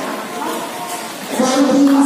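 Voices of players and spectators at a volleyball court calling out and chattering between rallies, louder from about halfway through.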